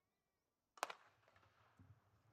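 A starter's gun fires once about a second in, signalling the start of a 100 m sprint: a single sharp crack followed by a short echo.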